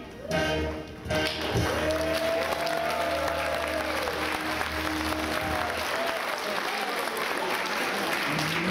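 Orchestral backing music for a children's song, ending on a held chord that dies away around six seconds in. From about a second in, audience applause and voices rise over it.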